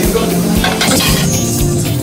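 Live band playing an instrumental passage, a steady drum beat under held chords.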